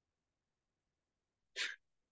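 Near silence, then a man's short breathy laugh, a single puff of air, near the end.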